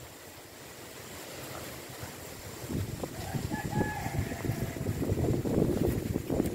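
A rooster crowing faintly a little over three seconds in, over low, gusting wind buffeting the microphone that grows louder toward the end.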